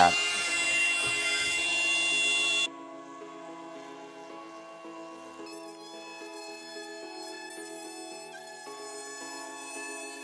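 Cordless trim router with a flush-trim bit running at speed with a high whine as it trims excess laminate flush with the countertop edge; the sound cuts off abruptly about three seconds in, giving way to background music with long sustained notes.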